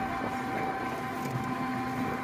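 A steady whine of several held tones over low road noise, as from a vehicle moving along the street.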